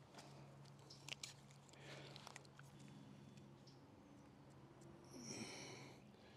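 Near silence: a faint steady low hum with a few soft clicks and scrapes, and a brief faint high-pitched sound about five seconds in.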